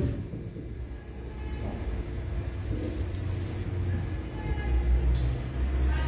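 Low, steady rumble of background noise, with a few faint clicks.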